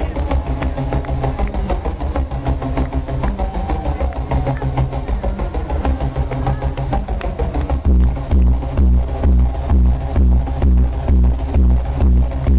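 Loud electronic dance music from a DJ set on a club sound system: a busy percussion-led passage, then about eight seconds in a heavy, steady kick drum drops in at about two beats a second.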